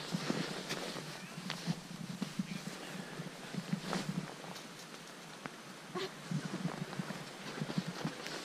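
Chunks of snow thrown onto the thin ice of a frozen lake, landing with a few scattered sharp clicks and knocks.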